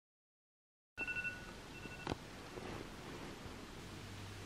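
Smartphone alarm going off for wake-up: a short, high electronic beep about a second in and a second, shorter beep, ended by a click. Faint room noise follows.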